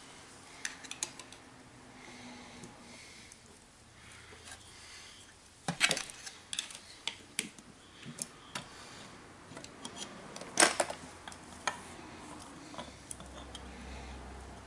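A screwdriver prying and scraping at the aluminium rear head of a Denso 10P30-style car A/C compressor, working the head off its alignment pins: scattered metal clicks and scrapes, the sharpest about six seconds in and again near eleven seconds.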